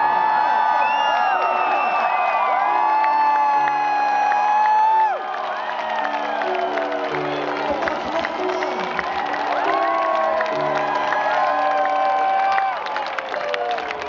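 Live band music at an outdoor rock concert: steady keyboard chords under long, wordless held vocal notes, with a large crowd cheering and singing along. The first five seconds are the loudest, then the sound drops off suddenly and the held notes return more softly near the end.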